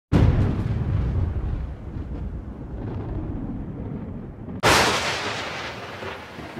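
Two deep booming hits: the first at the very start, with a long rumble that slowly fades, and a second, brighter hit about four and a half seconds in that also fades away.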